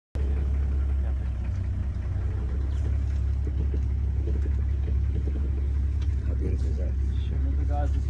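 Steady low rumble of an idling vehicle engine, with faint voices murmuring in the middle.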